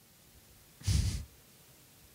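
A single short breath out from a man into a close microphone, a sigh or a breathy half-laugh, about a second in; otherwise near silence.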